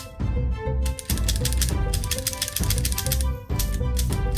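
A rapid run of mechanical clicks from a toy revolver's cylinder being worked by hand, from about a second in until shortly past the middle, over steady background music.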